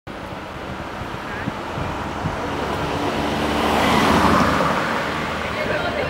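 Street traffic noise, with a car passing close that swells to its loudest about four seconds in and then fades.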